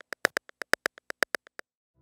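Roland TR-8 drum machine's clave sound, triggered by MIDI notes, playing a fast even run of short sharp clicks, about eight a second. It stops about a second and a half in.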